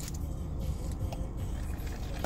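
Steady low rumble of a car running, heard inside the cabin, with a few faint sips through a straw.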